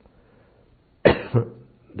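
Near silence, then a man coughs twice in quick succession about a second in.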